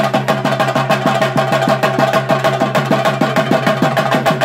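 Theyyam chenda drumming: cylindrical chenda drums beaten fast with sticks in a steady, even run of strokes.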